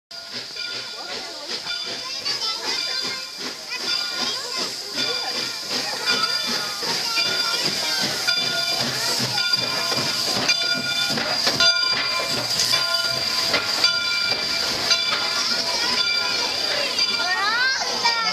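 Canadian Pacific 3716, a 1912 2-8-0 steam locomotive, passing close by at low speed, hissing steam, with a ringing tone sounding over and over as it goes by.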